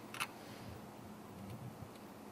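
A single sharp click of metal dissecting forceps in a pinned frog's opened body, near the start, over faint low handling noise.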